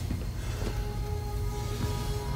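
Background score music: a low, steady drone with a few faint held notes above it.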